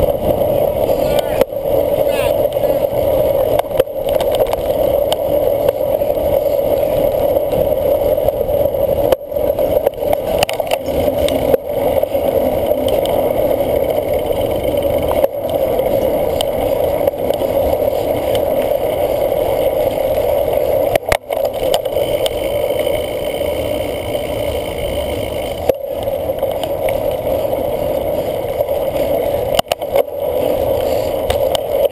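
Steady, muffled rush of wind and rolling noise picked up by a camera on a cyclocross bike's handlebars as it rides over a grass course. A few brief gaps break the noise along the way.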